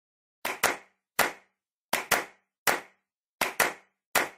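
Rhythmic handclaps in a repeating pattern, a quick double clap then a single clap, about three to a second and a half, with silence between them.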